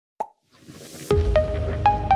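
Logo-reveal jingle: a short pop, a rising whoosh, then a deep bass hit about a second in, followed by a few bright plucked notes.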